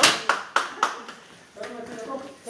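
A small group of people applauding, the clapping thinning to a last few claps within the first second and dying away, then voices.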